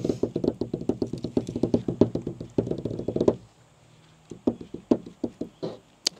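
Hands drumming rapidly on a folding table top in a drumroll lasting about three and a half seconds, then stopping, followed by a few scattered knocks and taps.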